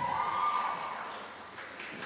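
Scattered applause in a hall dying away, with light footsteps across a stage and a faint steady tone that fades out about halfway through.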